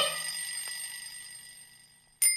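A bicycle bell's ring fading slowly away after music stops at the start.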